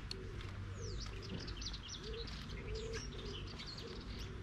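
Doves cooing, a string of short low coos, with small birds chirping in quick high notes from about a second in.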